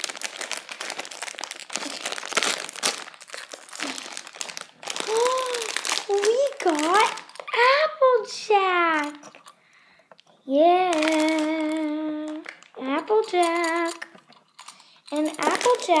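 Foil blind-bag packet crinkling and being torn open for about the first five seconds. Then a girl sings wordless sliding notes and a long held, wavering note.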